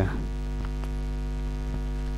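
Steady electrical mains hum: a low buzz with a stack of overtones, holding at an even level, with a few faint ticks over it.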